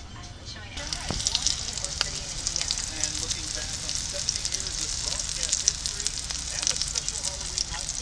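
Breaded morel mushrooms frying in hot oil in a skillet: a steady sizzle full of fine crackling pops, starting about a second in.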